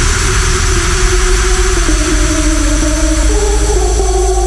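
Loud electronic dance music: a dense, noisy synth wall over a deep steady bass, with a low synth line stepping between a few pitches.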